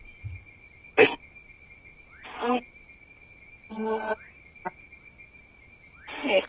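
A ghost-hunting spirit box gives out short, choppy fragments of radio voice and static about one, two and a half, and four seconds in, with a sharp click near the end. Under them runs a steady high chirring of night insects.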